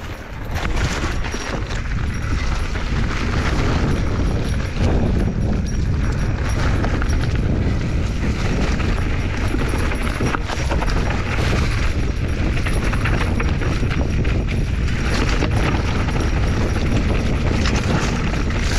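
Mountain bike ridden over a rocky singletrack, heard from a helmet camera: a steady heavy rumble of wind on the microphone with constant rattling and clattering of the tyres and bike over loose rock.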